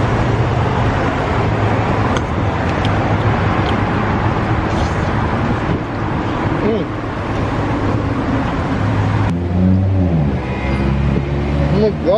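Loud, steady road-traffic and car-engine noise close by. About nine seconds in it drops to a lower engine sound whose pitch rises and falls.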